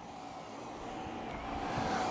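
Dyson V11 Outsize cordless stick vacuum running over deep-pile shag carpet, a steady hum growing louder. Its motor runs at raised power, boosted automatically as the cleaner head senses the deep pile.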